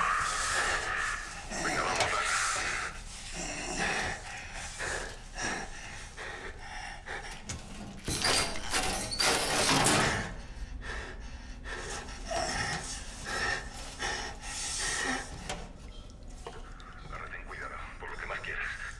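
A man's heavy breathing and low, muffled voices in a cramped space, with a loud rustling, scraping burst about eight seconds in.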